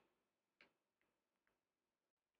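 Near silence, with three very faint ticks spread through the pause.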